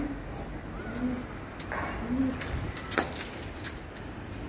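Pigeons cooing: three short, low coos about a second apart, over a steady low hum, with a few sharp clicks in the second half.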